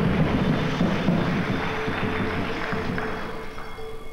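Crowd in a sports hall cheering after a point, a dense wash of voices that dies away over a few seconds.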